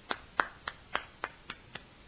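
A quick, even run of about eight sharp hand strikes, about three and a half a second, like rapid claps or snaps, in place of words.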